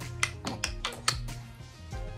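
Background music with steady held notes over a low bass line, with several sharp clicks in the first second or so.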